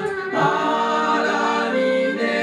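Several men's voices singing together in harmony, holding long notes that shift about half a second in, in a live traditional folk song.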